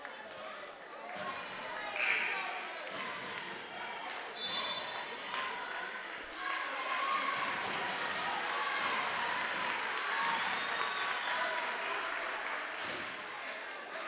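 Gymnasium crowd talking during a stoppage in play, with a basketball bouncing on the court floor as a run of sharp knocks between about two and six seconds in, and a short high squeak about four and a half seconds in.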